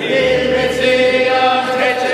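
A group of voices singing together, with long held notes.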